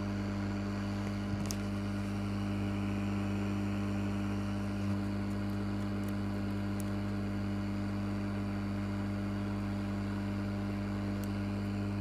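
Hot air rework gun blowing steadily on a circuit board, a constant hum with an even rush of air. It is desoldering the shorted ignition-coil driver MOSFET from a car's engine control module.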